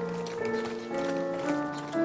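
A horse's hooves clip-clopping as a horse-drawn carriage passes, under background music of held notes that change about every half second.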